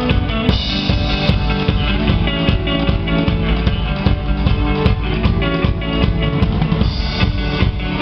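Live indie-folk band playing at full volume, with a drum kit's bass drum and snare keeping a steady beat under guitars and other pitched instruments.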